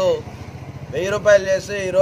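A man speaking, with a short pause near the start, over a steady low rumble.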